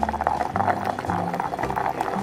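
Stone pestle grinding a wet green pepper paste in a granite mortar: a quick, rapid run of scraping and knocking strokes, with background music underneath.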